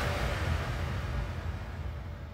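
Dramatic background score: a low rumbling drone that steadily fades away.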